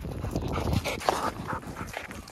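A dog whining in a few short, rising whimpers.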